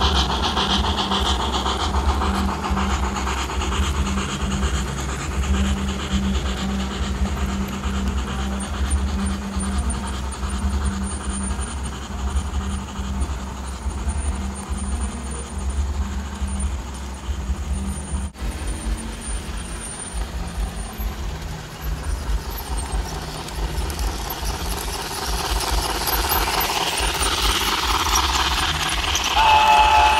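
Model steam locomotive running on its track: a steady low rumble and hum of the motor and wheels on the rails, with the train's sound effects. A short whistle sounds near the end.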